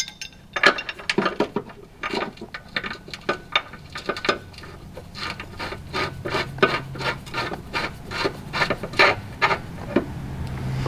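Steel tie-down bracket and its bolt scraping and clicking against the car's underbody as the bracket is held in place and the bolt is threaded in by hand: a close, irregular run of short scrapes, two or three a second.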